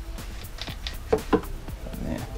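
Background music playing, with two quick sharp clacks a little over a second in as a steel bar clamp's sliding jaw is set against the glued-up panel.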